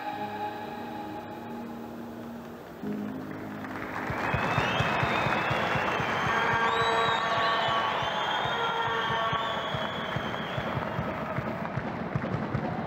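Slow music with held notes. About four seconds in, a large crowd's applause and cheering swell in over the music and carry on, with high wavering tones above them.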